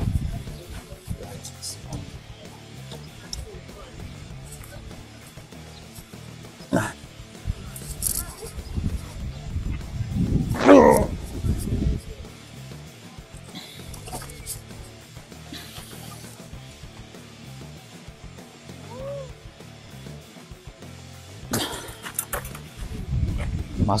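A man's strained grunts and groans of effort while hauling on a rope, over background music; the loudest, longest groan comes about ten seconds in, with another just before the end.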